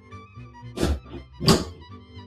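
Two thunks about two-thirds of a second apart: a saucepan being set back down on a portable two-burner gas stove, over soft background music.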